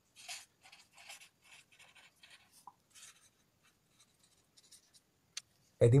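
Pen writing on a sheet of paper: a run of short scratchy strokes as two words are handwritten, stopping about five seconds in.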